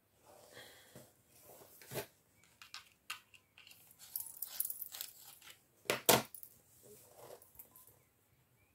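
Wooden coloured pencils clicking and clattering against each other and on the tabletop as they are handled, with a soft paper rustle between the clicks; the sharpest clacks come about two seconds in and about six seconds in.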